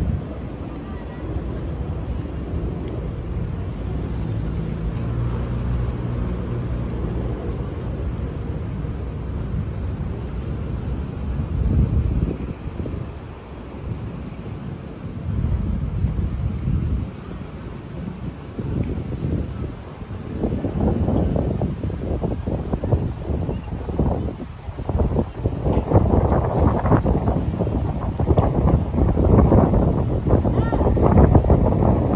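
City street ambience: traffic with wind rumbling on the microphone, turning gustier and louder in the last third.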